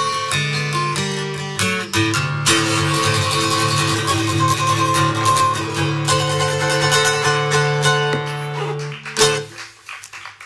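Acoustic guitar strummed through the closing instrumental bars of a bluesy folk song, with a final stroke near the end that rings out briefly.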